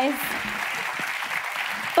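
Audience applauding, a steady patter of clapping.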